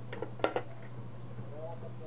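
A steady low hum, with one short sharp click about half a second in.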